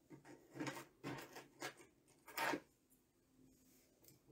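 Dangling costume earrings being handled and untangled at a table: a few short rattling rustles of the jewelry, the last and loudest about two and a half seconds in.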